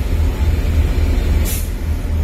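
Short sharp hiss of compressed natural gas about one and a half seconds in, as the CNG filling nozzle on the car is released with the tank full, over a low steady rumble.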